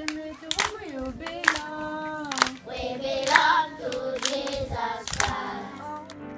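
A group of young children singing together, clapping their hands about once a second in time with the song.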